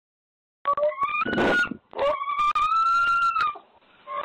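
Pet pig squealing at the front door to be let back inside: two long, high squeals, the second longer, each rising slightly in pitch. Heard through a video doorbell's microphone.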